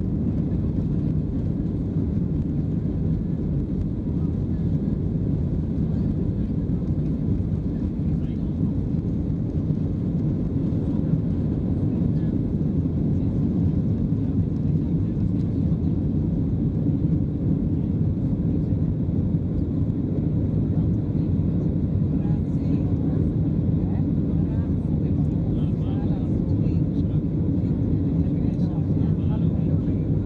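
Boeing 737-700's CFM56-7 turbofan engines at takeoff thrust, heard inside the cabin: a loud, steady noise weighted to the low end, running through the takeoff roll and into the climb after liftoff.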